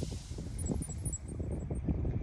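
Wind buffeting the microphone, an uneven, gusty low rumble.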